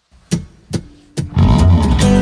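Three sharp hits about half a second apart lead in, then a band with bass guitar and guitar comes in loud and full, opening the song.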